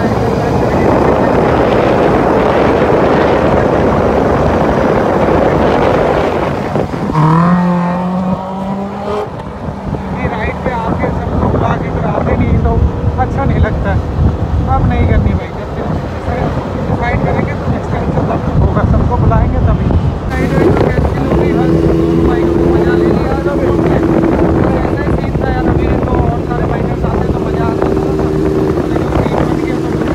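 Sport motorcycles riding at speed on a highway, their engines mixed with heavy wind rush on the microphone. About seven seconds in, an engine revs up through a quick run of gears, and later an engine holds a steady note.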